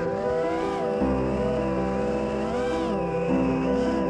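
An FPV racing quadcopter's brushless motors whining, rising and falling in pitch with the throttle, over background music with steady held chords.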